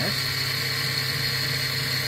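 The 1200 W spindle motor of a Taig mill's BT30 headstock runs steadily at about 7800 RPM, turning a half-inch three-flute end mill that is not yet cutting. It makes a steady high whine over a low hum.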